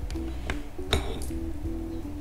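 Music with a steady, stepping melody and bass, over which cutlery clinks twice against a plate, the louder clink about a second in.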